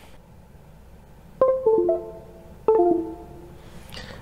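Akai MPC Key 61 keyboard sounding two short rolled chords in a plucked, guitar-like tone, about a second and a half in and again about a second later. The notes of each chord come in one after another in quick succession, then ring out and fade.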